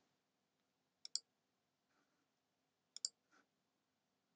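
Two faint computer mouse clicks about two seconds apart, each a quick press-and-release pair.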